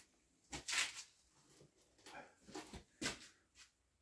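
A few faint, short handling noises, light knocks and brief scrapes, as the knife is set down and a wooden strop loaded with green polishing compound is picked up.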